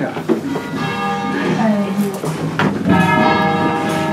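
Church bells swung from hand-pulled ropes, ringing a distesa: strike after strike rings on and overlaps with the next, with fresh strikes about a second in and near three seconds in.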